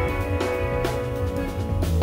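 Live band playing: electric guitars and bass holding sustained notes over a drum kit, with three sharp drum hits in the two seconds.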